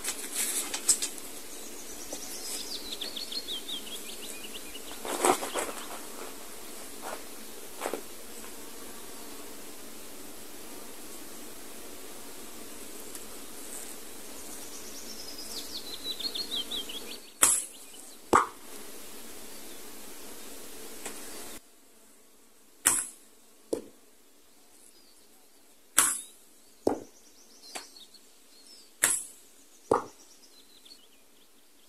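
Longbow shots: several times a sharp snap of the bowstring at release is followed about a second later by a lower knock of the arrow landing downrange. A small songbird sings a descending trill twice over a steady faint hiss in the first part.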